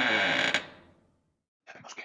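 A produced sound effect with many ringing tones and sweeping glides that ends with a click about half a second in and quickly dies away. After a silent pause, a brief faint rattle comes near the end.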